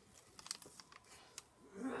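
Paper backing being peeled off a strip of adhesive tape, with a few sharp paper crackles and clicks, the clearest about half a second in and another near 1.4 s.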